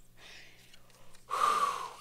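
A woman's breathy exhale, like a gasp or sigh, a short rush of breath about a second and a half in, with a fainter breath before it.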